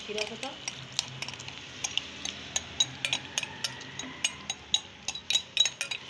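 A wooden slotted spatula scrapes soaked semolina from a bowl into a pan of hot melted sugar syrup. Many sharp clicks, several a second, come from the spatula knocking the bowl and pan, over a steady hiss from the hot pan.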